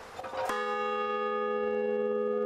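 A large hanging bell struck once about half a second in, then ringing on steadily with several tones sounding together.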